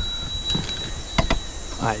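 Steady high-pitched warning buzzer from the Mercedes-Benz truck's cab, an irritating tone, with a few sharp clicks about half a second and just over a second in.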